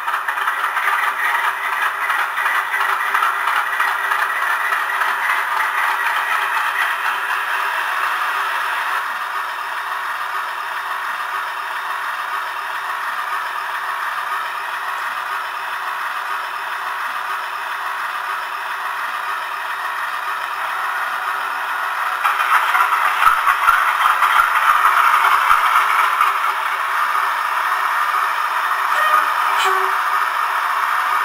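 Class 50 diesel engine sound, a recording of the English Electric 16-cylinder engine, played by a DCC sound decoder through a small speaker in an OO gauge model locomotive: a steady diesel idle with a clattery, thin small-speaker tone. The engine sound swells for a few seconds past the two-thirds mark, then settles.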